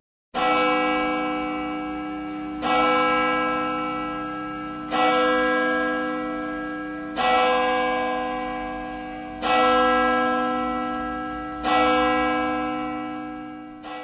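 A large church-style tower bell, swung by its rope, tolling slowly: six strokes about two seconds apart, each ringing on and fading until the next.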